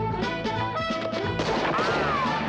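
Up-tempo brassy film-score music, cut about one and a half seconds in by a sudden gunshot crash followed by a brief whine that rises and then falls.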